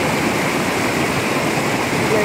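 Steady rush of a shallow rocky stream cascading over boulders.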